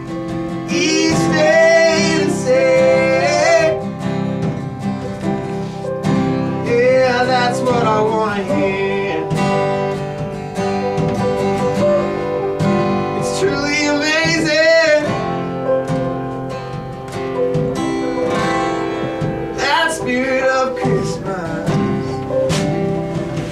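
Live acoustic band music: a strummed acoustic guitar under a voice singing long, wavering held notes, with light percussion strikes.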